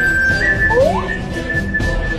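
Background music: a high melody note held steadily over a busy lower accompaniment, with a short rising slide about a second in.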